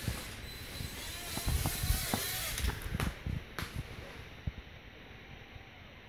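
Handling noise as a kitten is picked up and set back down on a wooden floor: rustling and soft bumps, with sharp clicks about three and three and a half seconds in.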